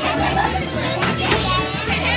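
A crowd of children talking and shouting at once over background music with a steady bass line.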